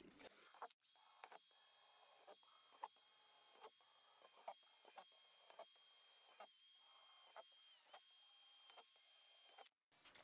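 Very faint cordless drill boring holes in a plastic storage box: a steady high whine that dips slightly in pitch a couple of times, with irregular short clicks.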